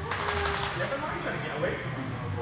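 Water splashing and pouring off a large dog as it is hoisted out of a hydrotherapy pool: a short rush of noise during the first second. Indistinct voices in the background.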